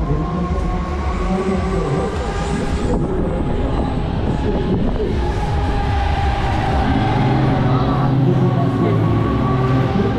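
Pendulum fairground ride in motion, heard from the rider's seat: a steady rumble with wind rushing over the microphone. Machine whine tones slide slowly up and down in pitch as the arm swings, and a deeper hum comes in about seven seconds in.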